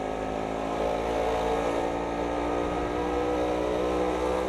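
A motorbike's engine running at a steady pitch, growing slightly louder as it draws nearer.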